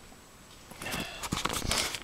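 Scuffling and rustling with small clicks, starting under a second in: a cat handling a mouse it has caught.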